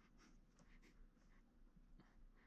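Several short, faint scrapes of a small sculpting tool working over the surface of oil-based sculpting clay.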